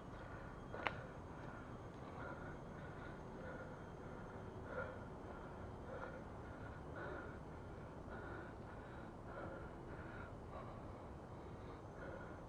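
A cyclist's heavy, rhythmic breathing while climbing a hill trail, over a steady low background noise, with one sharp click about a second in.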